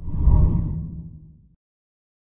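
A whoosh sound effect for a TV news channel's logo animation: one deep swoosh that swells quickly and fades out over about a second and a half.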